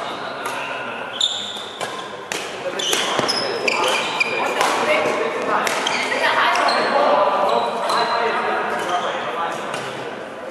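Badminton rally: rackets striking the shuttlecock in sharp, irregular cracks, with sneakers squeaking on the court mat in short high squeals, echoing in a large hall. Voices chatter underneath.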